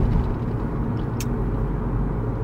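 Car cabin noise while driving: a steady low rumble of engine and road. A single click comes about a second in.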